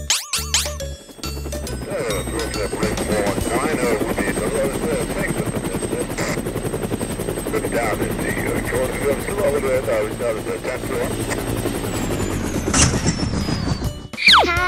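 Cartoon helicopter sound effect: a fast, steady rotor chop mixed with music and voices, ending near the end.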